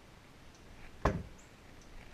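A single sharp knock about a second in, against faint background.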